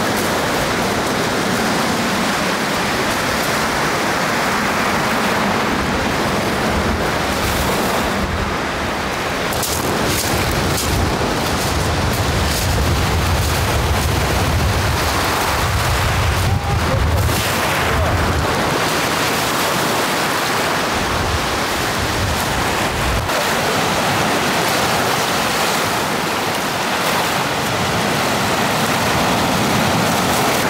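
Small waves breaking and washing up a pebble beach: a steady hiss of surf, with a low rumble through the middle stretch.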